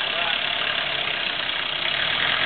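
A 4x4 Jeep's engine running steadily at low revs as the vehicle crawls slowly.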